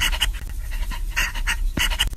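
A man panting rapidly and rhythmically, about five short breathy puffs a second.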